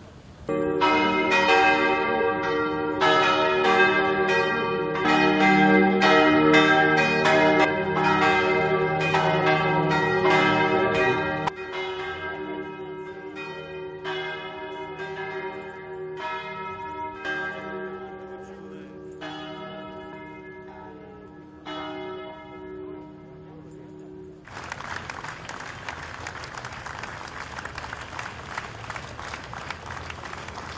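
Church bells ringing for a funeral, struck again and again with long ringing overtones, loud for the first ten seconds or so and then quieter, stopping about 24 seconds in. A crowd then breaks into applause.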